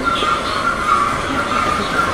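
Steady vehicle running noise with a wavering high tone over it.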